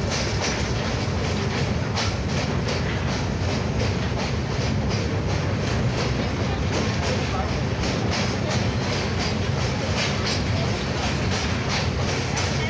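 Train running across a riveted steel truss rail bridge, heard from inside the carriage through an open window: a steady heavy rumble with rapid wheel clatter.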